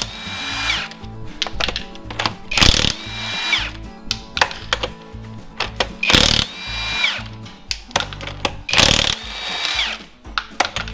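Hercules cordless impact wrench hammering on a truck wheel's lug nuts in about four short bursts, each ending with the motor's whine falling away.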